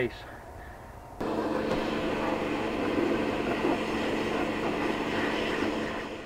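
A pressure washer starts about a second in and runs steadily: a motor hum under the hiss of the high-pressure water jet spraying onto a plastic crate and concrete.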